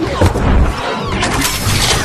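Robot-transformation sound effect: a loud, dense run of crashing and clattering, with sweeping whooshes through it.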